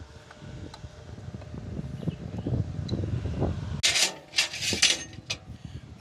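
Wind buffeting the microphone as a low rumble that grows over the first few seconds, with a few small metal clicks from a wrench working a battery terminal clamp. About four seconds in there is a loud burst of scraping and rustling.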